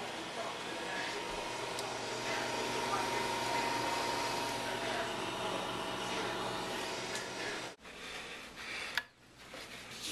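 NuWave countertop convection oven running, its fan giving a steady hum with a faint steady tone. The hum cuts off abruptly about eight seconds in.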